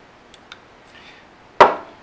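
A single sharp knock with a short ring about one and a half seconds in, as a hand tool is set down on the workbench, after a couple of faint ticks.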